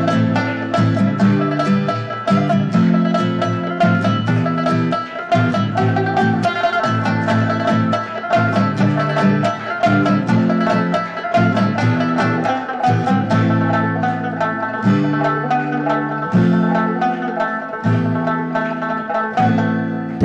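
Rabab and acoustic guitar playing together: a fast run of plucked rabab notes over the guitar's changing chords.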